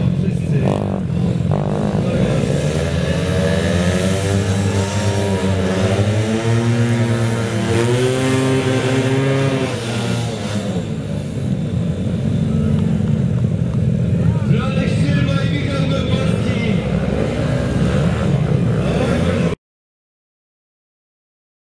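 Small mini speedway motorcycle engines running, with the revs rising and falling for several seconds partway through; the sound cuts off suddenly just before the end.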